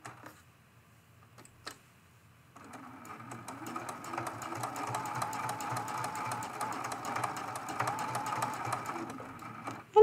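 Juki sewing machine stitching down a folded fabric edge, starting about two and a half seconds in and running steadily with rapid, even needle strokes and a motor whine, stopping just before the end. A few light clicks of fabric being handled come before it starts.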